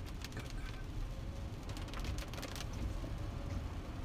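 Car cabin noise while driving in the rain: a steady low road rumble with scattered clicks and patter.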